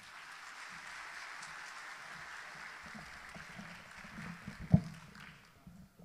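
Audience applauding steadily, then dying away near the end. A single loud knock about three-quarters of the way through, as the podium microphone is handled.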